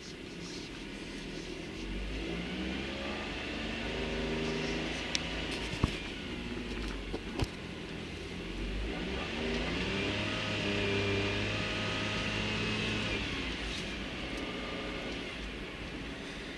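Car engine and road noise heard from inside the cabin, the engine speeding up and easing off twice as the car drives along. A few short clicks come about five to seven seconds in.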